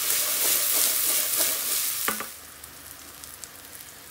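Freshly diced onion sizzling loudly in hot oil in an aluminium pan while being stirred with a wooden spoon. A single knock comes about two seconds in, and after it the sizzle is much quieter.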